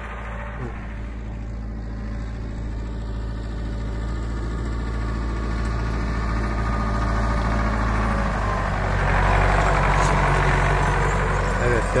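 Farm tractor's engine running steadily under load while it pulls a grain seed drill. It grows louder as the tractor draws near and is loudest as it passes close, about three-quarters of the way through.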